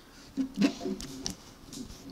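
Several sharp plastic clicks and knocks from a Lego model ship being handled as its missile shooters are worked.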